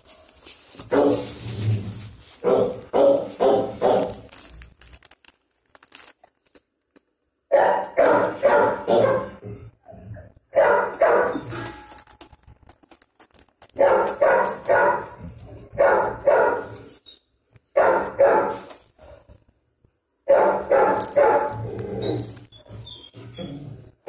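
Dog barking in repeated bouts of three to five barks, each bout a second or two long with short pauses between.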